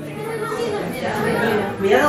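Indistinct chatter of several people's voices, nothing said clearly.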